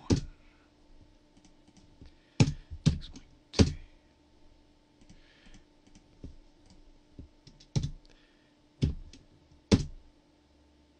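Computer keyboard keys struck one at a time, a few loud clacks spaced irregularly a second or more apart with fainter taps between, as number values are typed in. A faint steady hum runs underneath.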